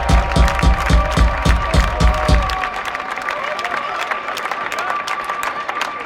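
Kick drum thumping about four to five times a second for the first two and a half seconds, then stopping, over a live crowd cheering and applauding. A steady held tone sounds throughout.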